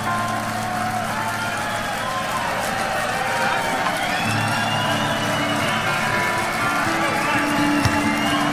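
Live rock band playing a quiet, sparse passage: held bass notes and sustained, gliding guitar lines, with audience voices underneath.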